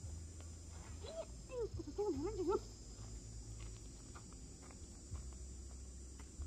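A short, high vocal cry that wavers up and down in pitch, starting about a second in and lasting about a second and a half.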